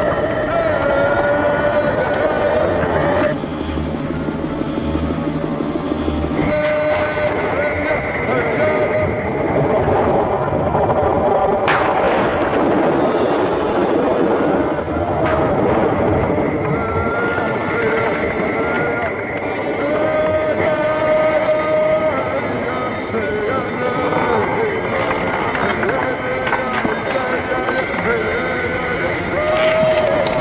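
Dramatic television score over a loud, steady rumbling sound effect of an alien craft taking off, with a sharp crack about twelve seconds in.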